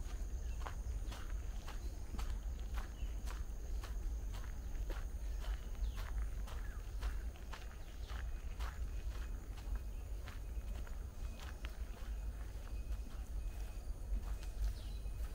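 Footsteps of a person walking at a steady pace, about two steps a second.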